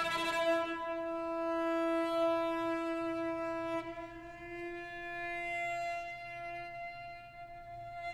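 Solo cello bowing one long, sustained high note that wavers slightly, over a faint low held note from the strings of the chamber ensemble.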